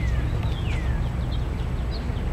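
A songbird calling in clear downward-slurred whistles, each about half a second long and repeated about once a second, with a few short high chirps near the end, over a steady low rumble.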